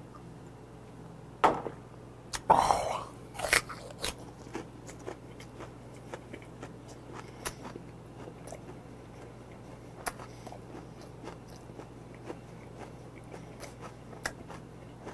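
Close-miked chewing of gizzard shad (jeoneo) with crunching, a few louder crunches in the first four seconds, then a steady run of small crunches to the end.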